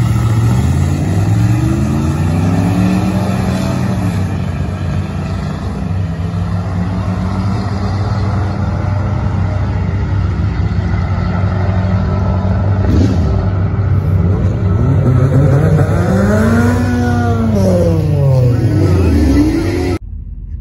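A Duramax diesel pickup and a car launching side by side on a drag strip and accelerating down the quarter mile. Their engine notes climb in pitch over the first few seconds. A steady engine drone runs underneath, and more rising and falling sweeps come near the end.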